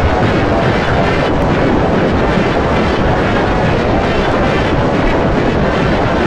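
Heavily distorted, effects-processed remix audio: a loud, continuous noisy wash with no clear melody or beat.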